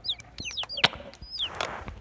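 Birds chirping: repeated short, high-pitched chirps that each fall in pitch, with a few sharp clicks among them.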